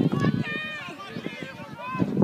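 Several voices shouting and calling over one another from the sideline of a rugby league match, with no clear words.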